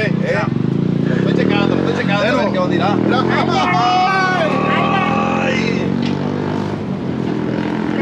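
A motor vehicle engine running steadily under people's voices, with a long drawn-out exclamation about halfway through.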